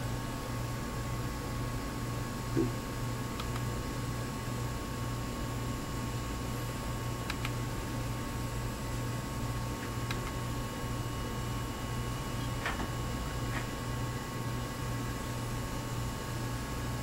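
Steady electrical hum with a thin high whine of fixed tones from lab electronics, and a few faint clicks scattered through, with a soft low thump about two and a half seconds in.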